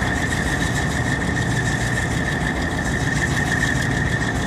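Diesel engines of main battle tanks running steadily as the tanks move at low speed, with a steady high whine over the low engine rumble.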